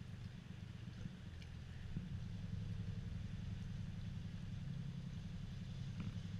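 A small canal tour boat's motor running steadily at low speed, a low hum that grows a little louder about two seconds in.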